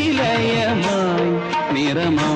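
Indian film soundtrack music: a held melody line that glides between notes over steady accompaniment.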